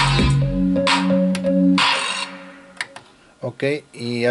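Recorded music with a heavy bass line playing back from a Sony CDP-C315 CD changer, stopping about two seconds in; a couple of faint clicks follow.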